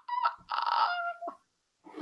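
A person's high-pitched squealing laugh: a short squeal, then a longer breathy laughing sound.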